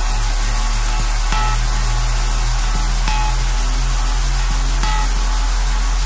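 Techno track played in a DJ set: a steady deep bass under a bassline that steps between notes, with a regular ticking beat and a short high synth note recurring about every two seconds.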